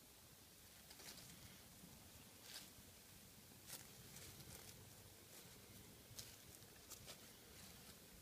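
Faint scratching and rustling of a small hand cultivator's tines raking through dry leaf bedding and moist compost, heard as a scattering of soft, irregular ticks.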